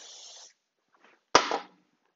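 WD-40 aerosol can spraying onto a cast-iron jointer table, a steady hiss that stops about half a second in. About a second later comes one sharp knock as the can is set down.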